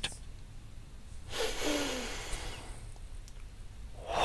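A man's audible inhale through the nose, starting suddenly about a second in and fading out over a second and a half, as part of the flushing-breath exercise of quick, deliberate nasal inhales.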